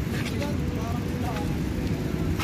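Steady low rumble of outdoor city noise, with short snatches of people's voices a little after the start and again about midway.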